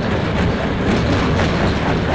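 Jaw crusher breaking excavated tunnel rock between its ribbed steel jaw plates: a loud, steady, dense rattle of many small stone-on-steel impacts.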